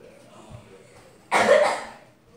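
A girl's single short, loud cough about a second and a half in, against quiet room tone.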